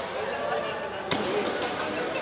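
Badminton racket striking a shuttlecock: one sharp crack about a second in, with a few fainter hits from other courts, over a background of voices in a large sports hall.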